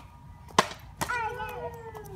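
A small plastic water bottle landing on asphalt: a sharp hit about half a second in and a second hit a moment later as it bounces.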